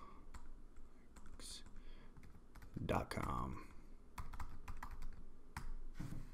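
Typing on a computer keyboard: separate key clicks coming at an irregular pace.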